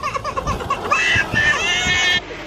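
Toddler crying: a quick run of short sobs, then a long high wail starting about a second in.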